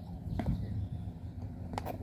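A child chewing a cream-filled doughnut, with small mouth clicks: one about half a second in and a few more near the end, over a low steady rumble.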